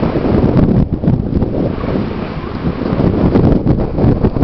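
Wind buffeting the microphone, loud and uneven, with surf washing over the rocks below.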